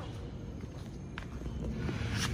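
Footsteps on a concrete floor with low handling rumble, and a couple of light clicks about a second in and near the end.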